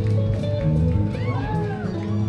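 Live jam-rock band playing: electric guitars, bass, keyboards and drums, with a few quick arching pitch glides a little over a second in.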